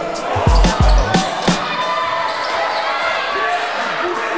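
Basketball bouncing on a hardwood gym floor, several thuds in the first second and a half, then a steady background of crowd voices in the gym.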